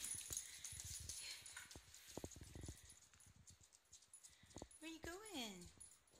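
Mostly quiet, with faint soft knocks, then near the end one short whine-like call that slides down in pitch.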